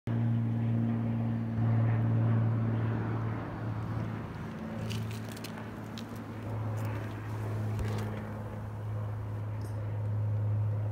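The 302 Ford V8 of a 1934 Ford coupe hot rod idling steadily, a low even hum through its exhaust. A few faint clicks come about five and eight seconds in.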